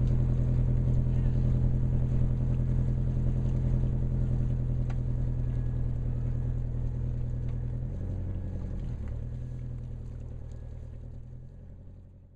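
Steady low drone of a boat's engine running, shifting slightly in pitch about eight seconds in, then fading out over the last few seconds.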